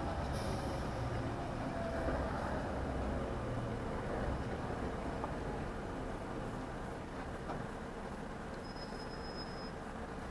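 Steady low engine rumble and road noise inside a lorry cab as the truck slows to a stop behind another lorry, growing slightly quieter over the last few seconds.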